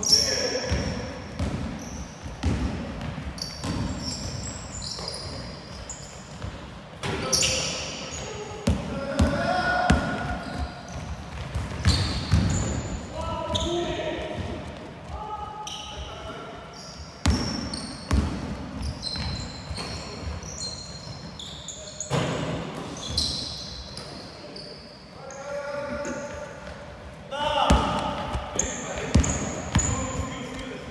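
Basketball bouncing on a hardwood gym floor as players dribble, with short high sneaker squeaks and players calling out, all echoing in a large hall.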